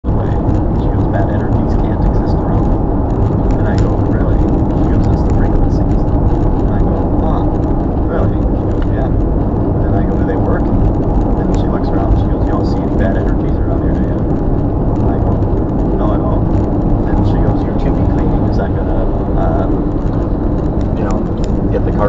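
Steady road and engine noise inside a car's cabin while cruising at highway speed.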